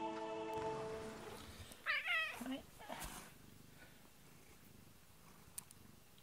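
A cat meowing: one loud, wavering meow about two seconds in with a shorter one right after, as background music fades out in the first second.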